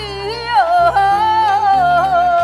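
A woman singing a Hakka folk song in a high, ornamented voice, sliding between notes and then holding a long, slowly falling note, over instrumental accompaniment with a stepped bass line.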